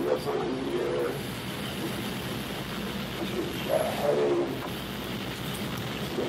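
A low, indistinct voice murmuring twice, once right at the start and again about four seconds in, over steady room hum.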